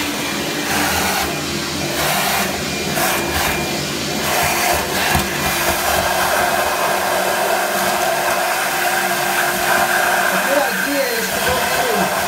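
Wet/dry shop vacuum running with its filter removed, its hose at an open shower drain sucking out a clog of hair and soap. The suction noise wavers for the first few seconds, then holds steady.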